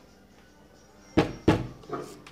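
Rubber mallet tapping new plastic hinge dowels into the holes of a wooden cabinet door: two sharp taps about a third of a second apart, a little over a second in, then a lighter one near the end.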